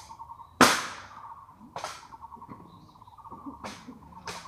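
Ceremonial honor guard rifle drill: a loud, sharp crack of a rifle being slapped or struck about half a second in, then fainter clacks near two seconds and near the end.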